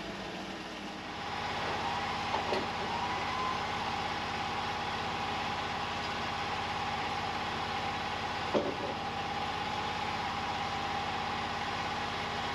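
Portable band sawmill's engine idling, a steady hum with a steady high tone over it, while no cut is being made. A couple of brief knocks sound over it.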